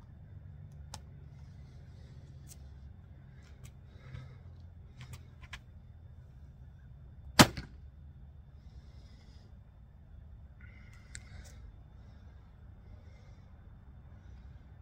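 A single shot from a Samick Sage takedown recurve bow with fur string silencers: one sharp snap of the string released from full draw, about halfway through. Before and after it come faint clicks from handling the arrow and bow.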